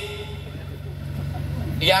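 A steady low hum, engine-like, fills a pause in the amplified speech; a man's voice over the loudspeakers resumes near the end.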